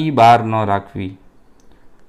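A man's voice speaking for about a second, then a short pause.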